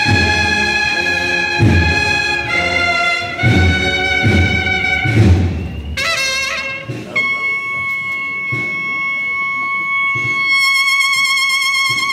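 Cornetas y tambores procession band playing a marcha procesional: bugles in full harmony over regular bass-drum beats. About halfway through, the drums drop out and the bugles hold one long sustained note.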